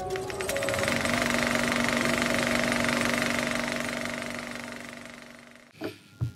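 Logo-animation sound effect: a rapid, even, mechanical-sounding rattle over a steady low tone. It swells in the first second, holds, then fades out gradually over the last few seconds.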